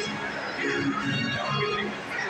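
Ballpark organ music over the stadium sound system, mixed with spectators' chatter.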